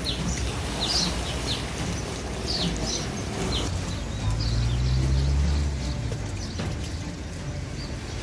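Small birds chirping with short, falling calls, several in the first few seconds, over a steady wash of river water lapping onto a flooded concrete landing. A low hum comes in for about two seconds midway.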